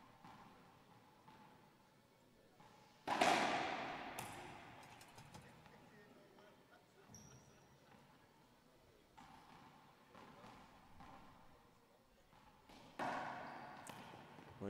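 A racquetball being hit by racquets and striking the walls and floor in an enclosed glass-walled court, each hit a sharp pop with a ringing echo. The loudest strike comes about three seconds in, there are scattered lighter hits after it, and a harder exchange begins near the end.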